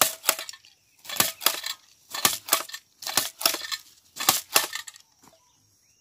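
Hand-held jab planter clacking as it is stabbed into the soil and its handles worked to drop seed, about once a second, five times in a row, stopping about five seconds in.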